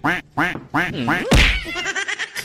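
White domestic duck quacking in a quick run of about four short quacks, roughly three a second. A sudden loud noise cuts in about a second and a half in.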